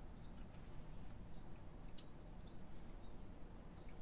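Quiet room tone with a steady low rumble and a few faint, short high clicks.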